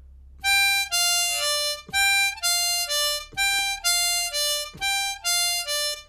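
C diatonic harmonica playing the same three-note falling triplet four times in a row: 6 blow, 5 draw, 4 draw (G, F, D). The notes are clean single notes with no bends.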